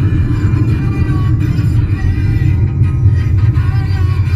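Rock music playing from a car radio, heard inside the cabin of a moving car over a steady low rumble.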